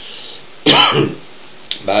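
A man clears his throat once, sharply and loudly, a little over half a second in.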